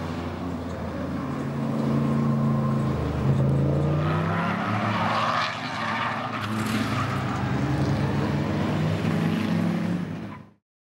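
Race car engines running hard on a road course as cars go by, engine pitch rising as one accelerates, with a louder rush of a car passing a few seconds in.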